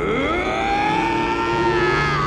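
A siren winding up in pitch over about half a second, then holding a long steady wail.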